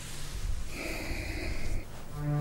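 A person's long, breathy exhale through the mouth, hissing for about a second and a half, over a steady low hum of room noise.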